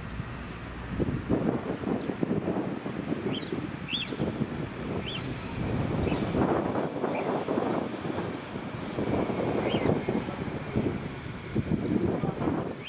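Wind rumbling and buffeting on the microphone. A small bird chirps every second or two in the background.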